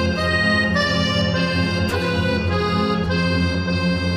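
Background music: sustained chords over a steady low drone, with a soft accent about every two seconds.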